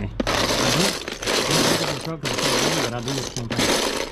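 Loose plastic Lego bricks clattering and rattling as hands rummage through a tub of them, in several spells of about half a second to a second with short gaps between.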